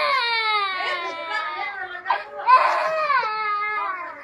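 A toddler crying in two long wails, each sliding down in pitch, the second starting about halfway through.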